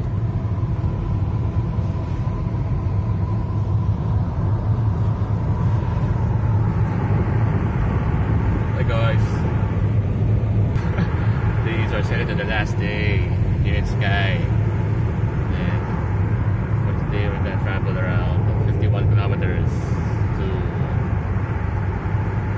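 Inside a moving car's cabin: steady low rumble of engine and road noise while driving along at a constant speed.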